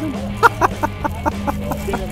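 Laughter in a quick run of short, even bursts, over background music.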